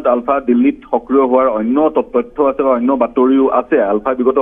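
Speech only: a person talking without a break, with short pauses between phrases.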